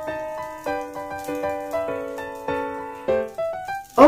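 Background piano music, single notes struck one after another in an unhurried melody.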